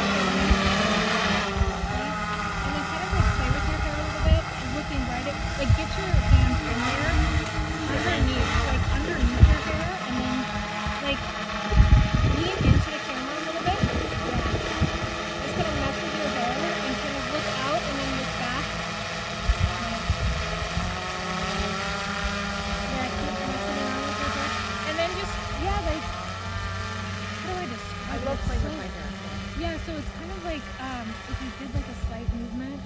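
Wind buffeting a phone's microphone in uneven gusts, strongest about ten and twelve seconds in, over a faint steady hum and indistinct voices.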